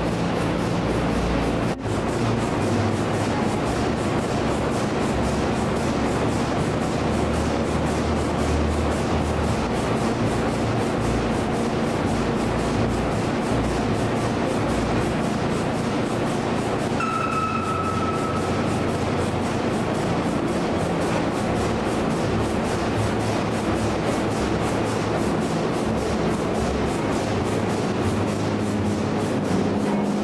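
Huge stationary diesel engine running steadily in its engine hall, a dense continuous mechanical din with a faint even beat. A short steady whistle-like tone sounds briefly about two thirds of the way through.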